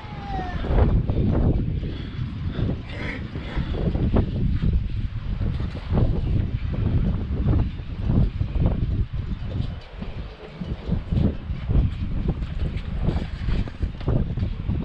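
Wind buffeting the microphone, a loud low rumble that rises and falls in uneven gusts.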